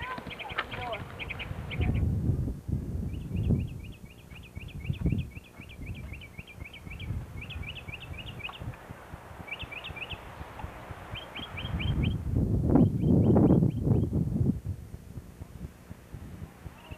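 A bird singing outdoors: short trilled phrases of rapid high chirps, repeated with brief pauses. Low rumbling bursts on the microphone come and go, loudest near the end.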